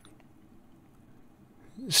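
Near silence with faint room tone, then a man's reading voice begins near the end.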